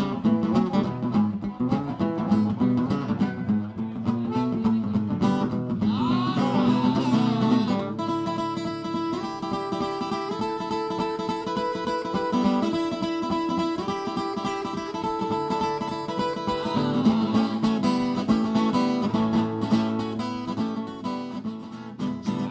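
Acoustic blues instrumental break: acoustic guitar keeps a steady strummed rhythm while a harmonica plays a solo. The solo has bent notes about six seconds in and long held notes and chords from about eight to sixteen seconds.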